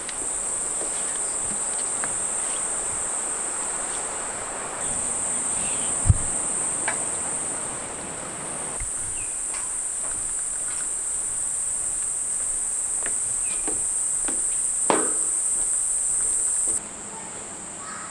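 Rainforest insects droning in one continuous high-pitched note, with a few light knocks of footsteps on wooden stairs and boardwalk and a single sharp thump about six seconds in. The drone cuts off abruptly near the end.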